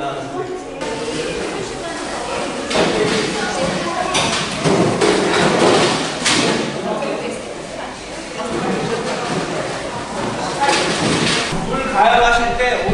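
Tap water running in several bursts, starting and stopping abruptly, into stainless steel brewing pots at steel sinks, with thuds from the pots as the brewing water is filled. People talk in the background.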